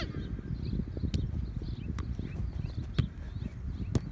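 Four sharp thuds about a second apart: a soccer ball being kicked between players on grass. Under them, a low rumble of wind on the microphone.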